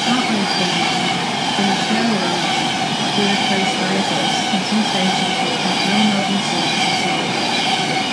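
Class 390 Pendolino electric train passing through at speed, its coaches close by: a loud, steady rush of wheels on rail and moving air, with a faint high whine.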